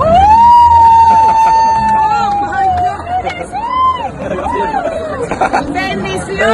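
A woman's long, high-pitched shout of "wow" in amazement, held for nearly three seconds, followed by shorter excited exclamations over the chatter of a crowd around her.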